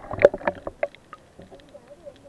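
Underwater recording: a quick run of sharp clicks and knocks in the water, loudest about a quarter-second in, thinning out after the first second.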